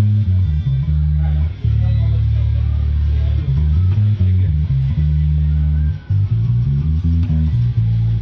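Squier Vintage Modified 70s Jazz Bass with roundwound strings, plucked through a Fender Rumble 100 bass amp with tone and volume all the way up: a line of low bass notes with a long held note about one and a half seconds in.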